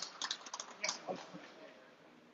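A few sharp handclaps from a small group dying away in the first second, then a faint murmur of voices.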